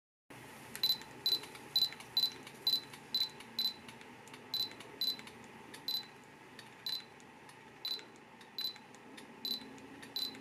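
Canon EOS M5 sounding its short, high focus-confirmation beep again and again, each beep marking the EF-M 22mm lens locking focus on a newly chosen point. The beeps come about two a second at first, then slow to about one a second.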